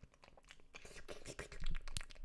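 Close-up clicking and crackling mouth and hand noises made with the mouth cupped against the microphone, an ASMR-style imitation of an illithid eating a brain. The clicks come thick and fast and grow louder near the end.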